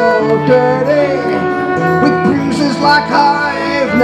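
A live folk song: two guitars strumming chords under a man's sung melody.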